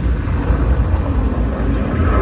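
Sound effects from an action film trailer: a steady, deep rumble with a dense noisy roar over it.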